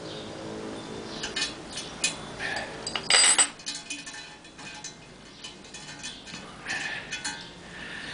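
Steel spanners clicking and clinking against a bolt and nut as a homemade rivnut tool squeezes a rivnut into a steel swinging arm. There are scattered light clicks, with one sharp metallic clink about three seconds in.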